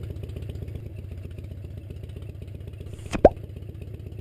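Motorcycle engine idling sound effect: a steady, low, rapidly pulsing rumble. About three seconds in, a short pop rises quickly in pitch.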